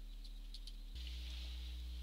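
Steady low electrical hum with a faint hiss, the hum growing louder about a second in. A few faint clicks of a computer mouse come in the first second.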